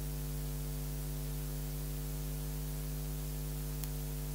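Steady electrical mains hum with a hiss of static on the audio line, and one faint click near the end.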